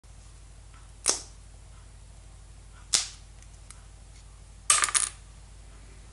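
Sharp clicks from small hard objects: a single click about a second in, another just before three seconds, then a quick rattle of several near five seconds, over a steady low hum.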